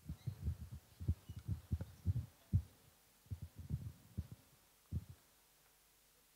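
Handling noise from a handheld microphone being passed along: a string of soft, irregular low thumps and bumps that stops about a second before the end.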